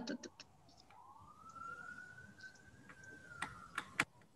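A faint siren wailing, its tone sliding slowly up and then back down in pitch. Two sharp clicks come near the end.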